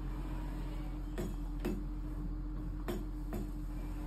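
Hay elevator being hoisted on a rope and pulley: a steady low hum with sharp clicks in two pairs, each pair about half a second apart, as the rig takes the strain.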